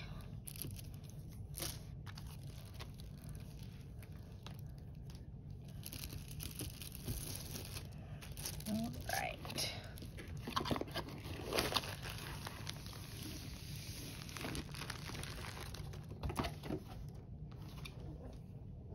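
Plastic packaging crinkling and rustling as it is handled, with scattered soft handling noises throughout.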